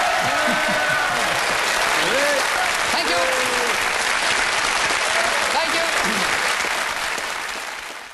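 Studio audience applauding, with a few voices calling out over the clapping; the applause fades out near the end.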